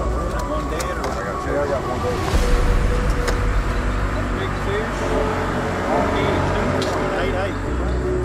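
Indistinct voices of several people talking in the background, over a steady low rumble.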